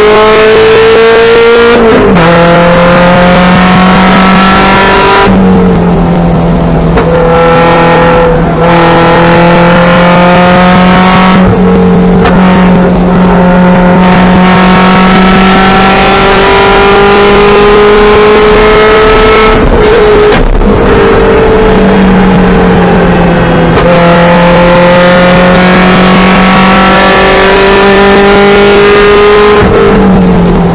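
Car engine under hard acceleration around a racetrack, heard from inside the cockpit. The pitch climbs under throttle and falls off sharply each time the driver lifts or shifts, several times in quick succession. A long rising pull runs through the middle before it falls away.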